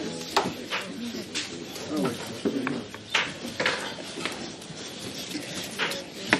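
Short, irregular knife clicks and scrapes as sweet potatoes are peeled by hand over a cutting board, with faint voices in the background.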